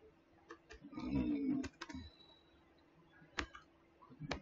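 Computer keyboard keys being typed: a handful of separate, sparse key clicks. A short murmured voice sound comes about a second in.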